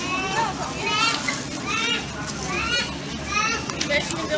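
A child's high-pitched voice calling out in about five short cries, over a background of other voices.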